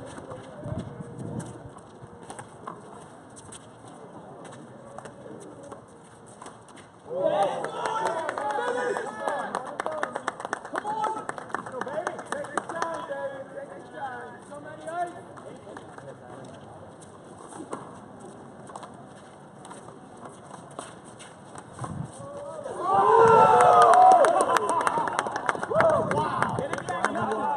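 Voices of handball players and onlookers calling out on an outdoor court, with a louder stretch from about seven seconds in and the loudest shouting near the end as the rally finishes. A few sharp slaps of the small rubber handball are heard, one a little before the last shouting.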